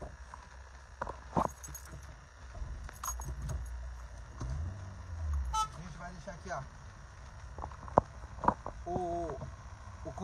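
Low, steady rumble of a slow-moving car heard from inside the cabin, swelling briefly a little before halfway. Scattered light knocks and clicks, a short horn-like tone just past halfway, and faint voices in the background.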